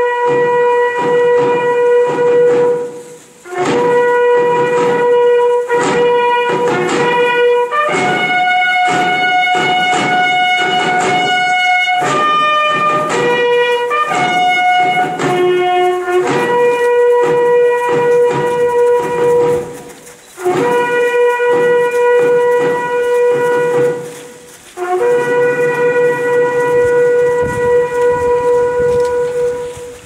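Bugle call on a brass instrument: long held notes, several seconds each, stepping up and down between a few pitches, in phrases with short breaks between them.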